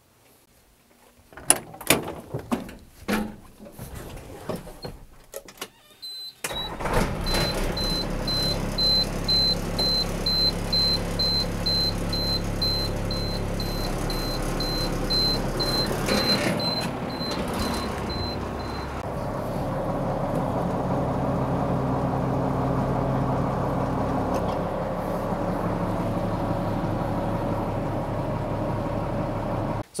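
Scattered knocks and clatter, then a high-rail truck's engine starts about six seconds in and runs steadily, with a rapid high-pitched beeping warning chime for roughly the next twelve seconds. From about twenty seconds in the running sound settles into a steadier hum as the rear high-rail gear is lowered.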